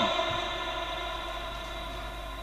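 A steady hum of several held tones, the fading echo of a man's voice dying away under it at the start.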